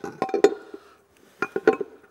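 Hard plastic pump cover clacking and knocking against its housing as it is fitted and pressed down onto the base. There are two short clusters of knocks, one early and one past the middle.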